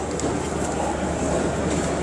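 Steady background noise of a large hall: a constant low hum under an even rush, with a few faint ticks.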